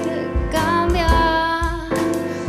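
Live band music: a woman singing long notes over piano and a drum kit.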